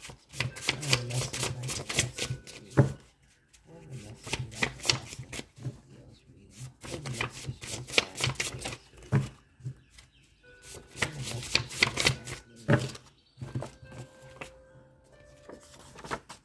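A hand-made deck of paper cards being shuffled by hand: runs of quick papery flicks and slaps in several spells, with short pauses between them.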